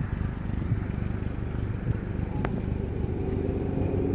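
A motor vehicle's engine idling with a steady low hum, and a single sharp click about two and a half seconds in.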